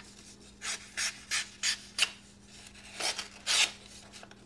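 An Axial Knives Shift OTF's MagnaCut tanto blade slicing through a sheet of paper in a series of short, crisp cuts, about seven strokes with brief gaps between them.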